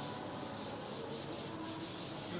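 A board duster rubbing across a chalkboard, wiping off chalk in quick back-and-forth strokes, about four to five a second.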